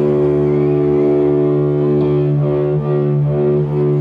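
Amplified electric guitar holding one long, steady low note, loud through the concert sound system, with a few slight wavers in the second half.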